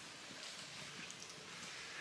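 Quiet outdoor background with faint, soft rustles of footsteps on grass.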